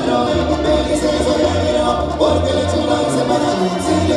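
Regional Mexican dance music with several voices singing together over a moving bass line and a steady beat of cymbal ticks, loud and continuous.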